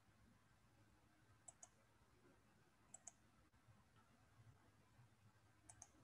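Near silence, broken by three faint, sharp double clicks spaced about a second and a half apart, the last near the end.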